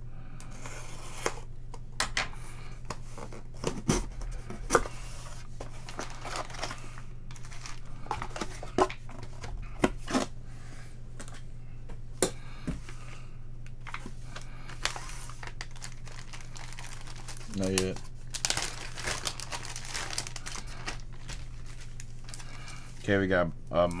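Tape on a cardboard box being slit with a folding knife, then foil-wrapped trading card packs handled and crinkled, with irregular crackles and clicks throughout and a longer stretch of rustling about two-thirds of the way in. A low steady hum lies under it all.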